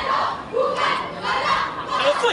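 A group of young marchers shouting a chant in unison, several loud shouted phrases in quick succession.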